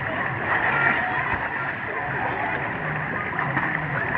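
Pool water splashing and sloshing around swimmers, with a steady hubbub of voices in the background.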